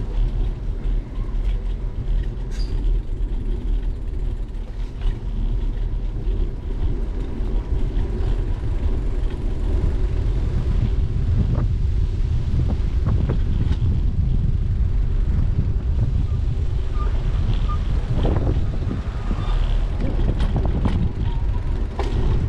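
Steady low wind rumble on the camera microphone of a moving bicycle, mixed with tyre and road noise, with scattered clicks and knocks as the bike rattles over the pavement.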